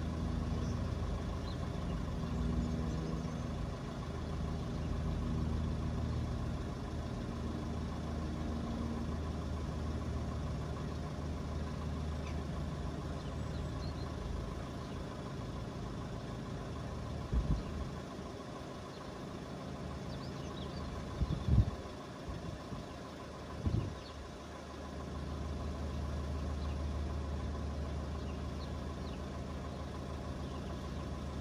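A road vehicle's engine idling steadily, with a low, even hum. A few dull, low thumps break in about two-thirds of the way through.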